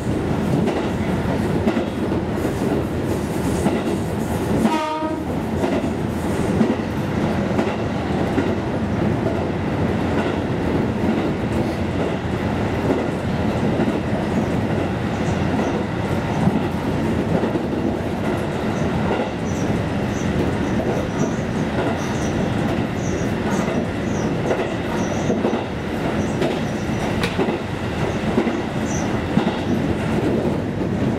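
KiHa 220 diesel railcar running steadily, heard from inside: engine drone and the clickety-clack of the wheels over the rail joints. A brief horn toot sounds about five seconds in.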